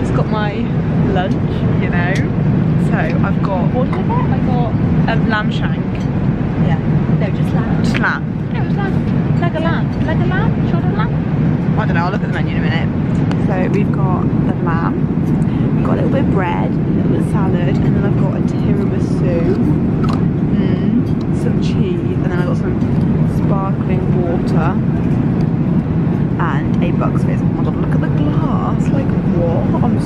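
Steady low drone of an airliner cabin in flight, with voices talking quietly over it.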